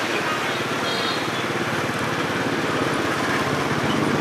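Small motorbike engine running steadily at low speed under a pillion rider, with road and wind noise.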